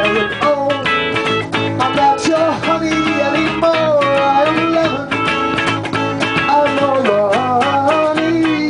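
A rock band playing live on electric guitars and bass guitar, a full, steady passage with a melody that slides up and down in pitch over the strummed chords.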